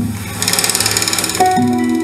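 A live band's fast drum roll for about a second, then the band comes in together on a hit, with sustained bass and guitar notes ringing out.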